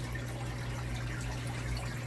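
Aquarium water trickling and bubbling steadily from the tank's aeration, over a constant low hum.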